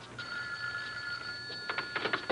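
Telephone ringing with a steady, high electronic tone that starts a moment in. Near the end come clicks and clatter as the handset is picked up.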